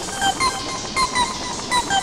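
Several pitch-shifted copies of the same film soundtrack played on top of one another. They form a dense cluster of short high notes that repeats with a pulsing rhythm of a few peaks a second.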